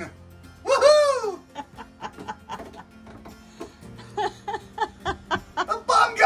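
A person laughing: one rising-and-falling whoop about a second in, then a run of short laughs near the end, over soft background music.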